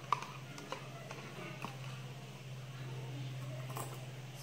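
Light clicks and taps of a spice container and measuring spoon being handled while seasoning is measured out, over a steady low hum.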